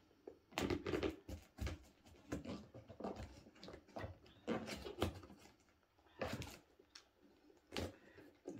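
Fingers picking, scratching and tapping at a taped cardboard box, trying to pry it open: irregular short scrapes and knocks on the cardboard.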